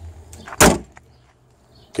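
Bonnet of a Mercedes-Benz W211 E55 AMG slammed shut: one sharp bang about half a second in.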